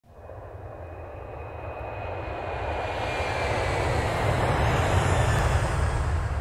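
Motorboat running at speed over open sea: a steady engine drone with wind and rushing water. It fades in from silence and grows steadily louder.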